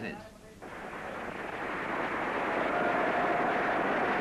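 Audience applauding on an old newsreel soundtrack, swelling in over the first second and then holding steady.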